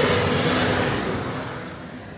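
A motor vehicle passing outside, its noise fading steadily away, heard from inside a parked SUV's cabin.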